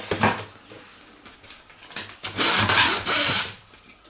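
Scissors opening a cardboard box: a few small snips and clicks as the plastic strap is cut, then two long scratchy strokes about two and a half seconds in as the blade slices along the packing tape on the seam.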